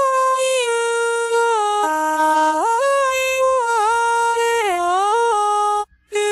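UTAU synthesized singing voice singing a melody in long held notes that step from pitch to pitch with no vibrato, breaking off briefly near the end. The envelopes were not reset to the voicebank's oto, so the syllables come out slurred and sloppy and not a word can be understood.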